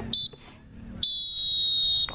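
Referee's whistle blown twice: a short high blast just after the start, then a long steady blast of about a second.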